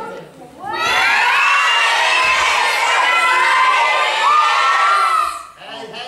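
A roomful of children shouting and cheering together, loud and sustained for about four and a half seconds, starting about a second in and dying away shortly before the end.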